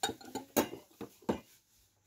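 Small glass cups clinking against one another, about five light knocks in the first second and a half, as a cup is set back into its cardboard display box among the others.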